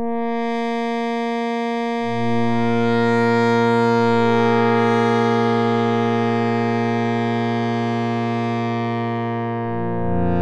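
Arturia OB-Xa V software synthesizer playing a slow pad patch with all effects off. A held note is joined about two seconds in by a low bass note and higher voices into a sustained chord whose tone slowly brightens and then mellows again. A new chord comes in near the end.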